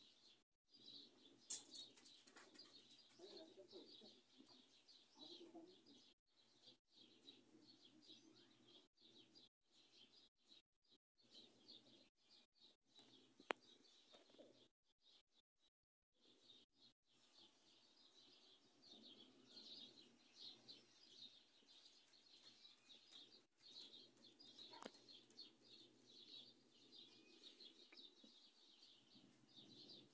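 Faint chirping of small birds, many short calls overlapping, with a few sharp clicks; the loudest click comes about a second and a half in.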